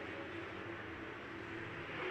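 Faint, steady engine noise from the super late model dirt cars running laps on the track, heard as a distant hum under the broadcast microphone.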